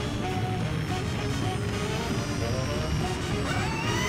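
Background music over a low engine rumble from a descending lunar lander, with a rising whine starting near the end.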